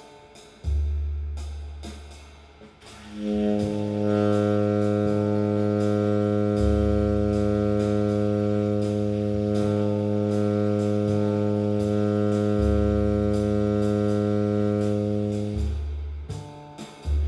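Tenor saxophone holding one low note as a steady long tone for about twelve seconds, entering about three seconds in and stopping just before the end. It is a long-tone exercise for breath support and tone. Under it a bass-and-drum play-along track runs, with the bass holding a low note and changing it every few seconds, and light cymbal ticks throughout.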